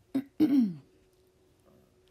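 A person clearing their throat: a short catch followed by a longer rasp that falls in pitch, both in the first second.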